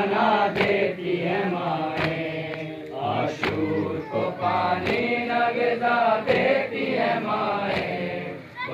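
Men chanting an Urdu noha (Muharram lament) in a steady sung melody. Sharp slaps come about once a second: matam, hands beating chests in time with the noha.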